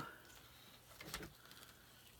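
Near silence, with a brief faint rustle about a second in: a sheet of glitter paper being slid into place on a paper trimmer.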